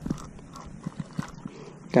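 A few faint, irregular clicks and light knocks from a spinning rod and reel as a hooked catfish is worked in to the boat.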